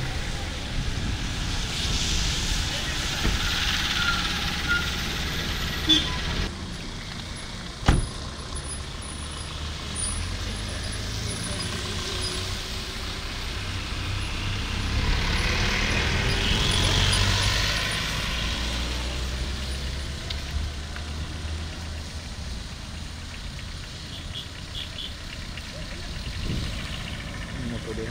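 Road traffic going by on a wet road: cars and motorbikes passing, with two louder passes, one near the start and one past the middle. A single sharp knock comes about eight seconds in.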